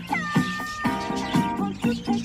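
Background music with a steady beat and a held note that slides down slightly near the start.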